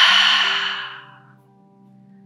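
A woman's long, audible let-go exhale in a breathing exercise, breathy and fading away over about a second and a half. Soft background music with a held tone continues underneath.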